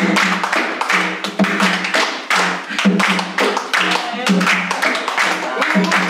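Capoeira roda music: an atabaque hand drum beating a steady rhythm while the circle claps along in time, with voices singing over it.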